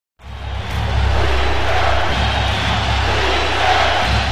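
Loud, steady rushing noise with a deep rumble underneath, an intro sound effect that starts abruptly.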